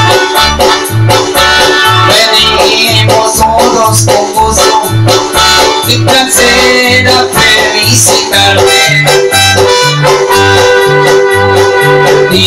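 Electronic arranger keyboard playing an instrumental tune with a melody over a steady bass that alternates between a low and a higher note about twice a second.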